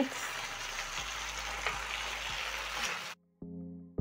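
Tomato sauce sizzling steadily in a nonstick frying pan as cooked beef pieces are tipped in. A little after three seconds the sound cuts out abruptly, and a short, steady low musical note follows.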